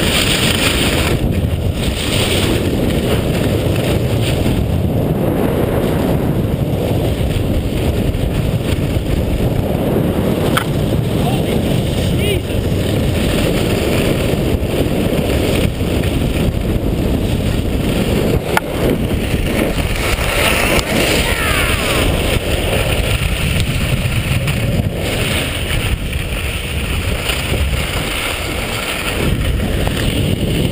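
Steady low rush of wind buffeting the microphone of a camera carried by a skier moving fast downhill, mixed with the hiss of skis running over snow.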